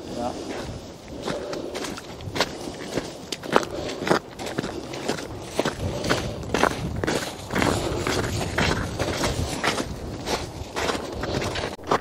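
Footsteps on a snowy track, walking at about two steps a second, each step a short crunch.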